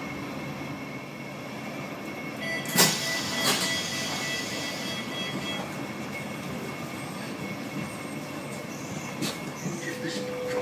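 Sheffield Supertram heard from inside the car as it draws into a stop. It runs with a steady rumble, with two sharp knocks about three seconds in, a thin high squeal lasting a few seconds, and another knock near the end.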